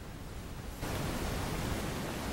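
Steady hiss that steps up louder a little under a second in, then holds even.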